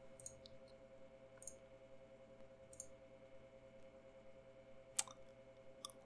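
A few faint computer mouse clicks over near-silent room tone with a faint steady hum; the most distinct click comes about five seconds in.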